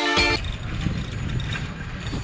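Electronic background music with a steady beat stops about half a second in. It gives way to the street noise of a busy bazaar lane, with the rumble of motor traffic and general bustle.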